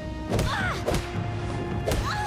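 Cartoon fight sound effects over a music score: three sharp hits, about half a second, one second and two seconds in, each followed by a quick swishing glide. The last hit lands as fingers jab into an arm in a chi-blocking strike.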